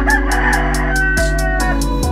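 A rooster crowing once, about a second and a half long, over background music with a steady beat.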